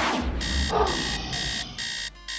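A sudden swish, then a harsh electronic buzzing sound effect that cuts on and off about twice a second over a low rumble.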